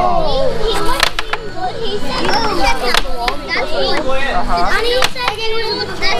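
Children talking and calling out over one another, with sharp knocks about once a second.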